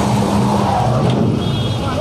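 Road traffic in a slow jam: vehicle engines running steadily with a low hum, and voices in the background.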